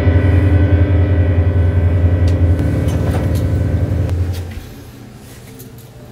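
Digital piano's final deep chord held and ringing steadily at the close of a fast étude, then stopping about four and a half seconds in. After it, only faint room noise with a few light knocks remains.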